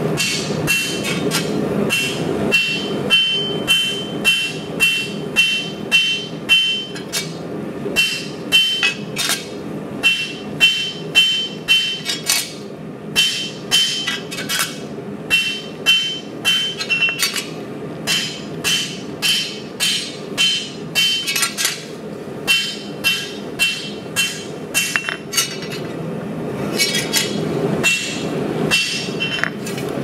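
Rounding hammer striking a red-hot 80CrV2 steel blade on an anvil, about two blows a second with a few short pauses, many blows carrying a high ring. The blade is being flattened into its preform shape by hand, without a power hammer.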